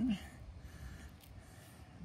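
A man's voice trails off at the very start, then only faint, steady outdoor background noise.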